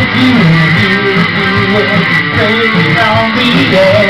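Strummed guitar with a singer holding and bending long sung notes over it, a live rock song. The singing comes back in with words near the end.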